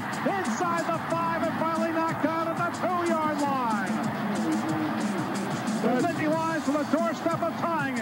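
Background music with held notes and sliding pitches, mixed with voices.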